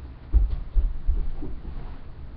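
A few low, muffled thumps in quick succession, starting about a third of a second in and lasting about a second.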